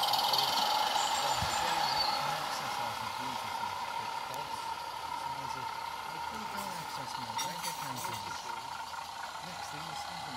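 Model garden-railway trains running on metal track: a steady ringing hum of wheels on rails that slowly fades, with a few light clicks about three-quarters of the way through.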